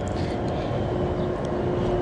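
Steady low background rumble with a faint constant hum and no distinct events.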